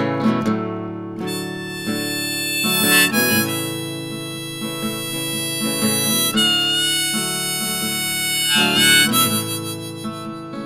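Harmonica in a neck rack playing an instrumental solo over an acoustic guitar, a The Loar LH-200 small-body flattop. It plays long held notes, with a wavering bent phrase about three seconds in and a louder one near the end.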